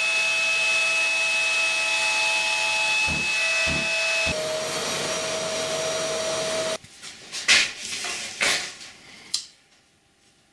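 Plunge router running at speed, routing out a small wooden control-cavity cover against a template, with a steady high whine over a rushing noise. The router stops abruptly about seven seconds in, followed by a couple of sharp knocks.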